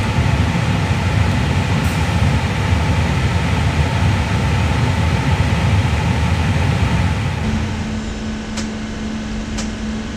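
A steady low rumble gives way, about seven and a half seconds in, to a steady hum. Over the hum come sharp snaps about once a second: a PW1100G engine's igniter plug sparking during the ignition system test.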